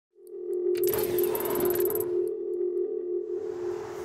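Electronic intro sting for a logo: a steady held tone that starts just after the beginning, with a few sharp clicks and a bright shimmering swoosh during the first two seconds.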